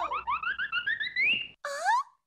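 Cartoon sound effects: a quick run of short rising chirps that climb steadily in pitch for over a second, then, after a brief break, one swooping tone that dips and rises again.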